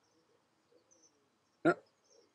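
Near silence: room tone, with a couple of very faint high chirps and no other sound.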